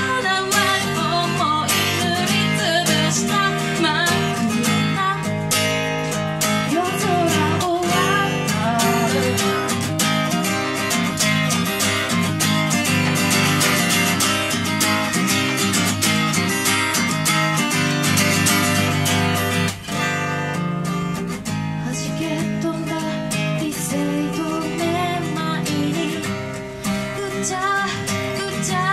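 A woman singing to her own strummed steel-string acoustic guitar.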